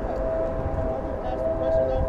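A long, steady horn sounding two held notes together, over wind rumbling on the microphone of a handheld camera being carried while walking.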